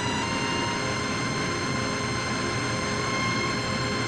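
Loud, dense soundtrack drone: a thick wash of noise with several steady high tones held over it, entering just after the start.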